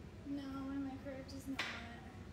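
A green bean being cut on a cutting board, one sharp snip about one and a half seconds in, just after a woman hums a short note.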